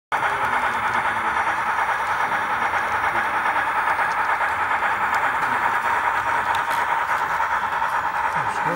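Brass model CPR P2 2-8-2 Mikado steam locomotive running along the track: a steady mechanical whirr of its motor and gearing, with a constant whine near 1 kHz and the wheels rolling on the rails.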